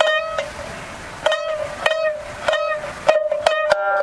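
Jiuta shamisen played solo: single notes plucked with the plectrum, about half a second to a second apart, each ringing on. The notes quicken into a short run near the end.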